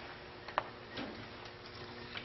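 A few scattered light clicks and taps, the sharpest about half a second in, over faint room noise with a low steady hum.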